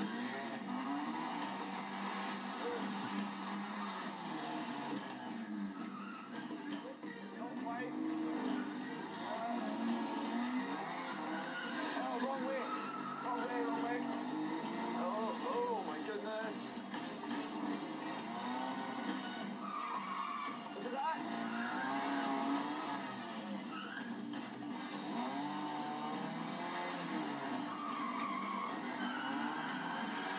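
A small car's engine revving up and falling back again and again, with tyres squealing through tight turns and stops on tarmac during a timed autotest run.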